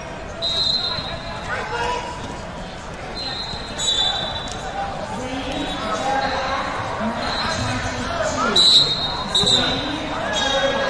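Wrestling bout in a large hall, with coaches and onlookers shouting. Several brief high-pitched tones cut through, the loudest near the end, along with a few dull thumps.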